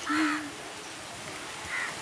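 A woman's solo voice singing a hymn into a microphone: a held note ends about half a second in, followed by a pause of faint background noise before the next phrase.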